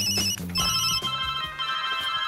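Several mobile phones playing electronic ringtone melodies at once, overlapping beeping tunes. More phones join about half a second in.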